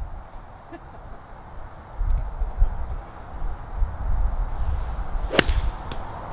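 A golf iron is swung and strikes the ball once near the end with a single sharp crack. Beneath it is a low rumble of wind on the microphone.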